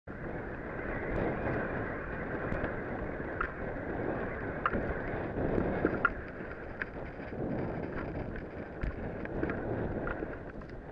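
A snowboard sliding and scraping over chopped-up, tracked snow at speed, with wind rushing over the camera's microphone, and a few brief sharp ticks.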